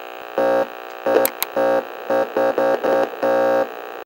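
Short electronic outro: a run of synthesizer blips on the same pitch, some clipped and some held a little longer, over a faint steady static hiss.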